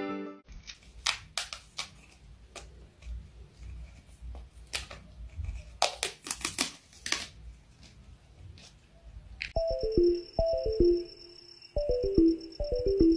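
A cat's claws scratching at textured wallpaper: a run of irregular scratches and sharp clicks, densest about six seconds in. A music track cuts off just after the start, and about nine and a half seconds in a new tune begins, short falling runs of notes over a steady high tone.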